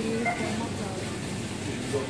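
Supermarket background: faint voices over a steady hum of store noise.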